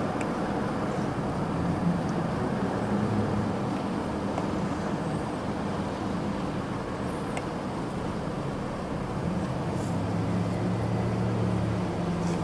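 A car engine running steadily amid street traffic noise, its low hum growing a little stronger near the end.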